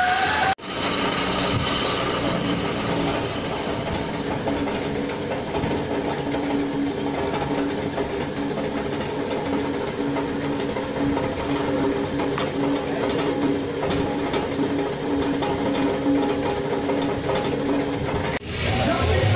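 A metal lathe running while turning a cast V-belt pulley: a steady mechanical din with a constant low drone and no pauses.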